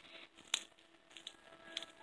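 Faint handling noise from a phone being moved around on a bed, with one sharp click about half a second in and a few fainter ticks after it.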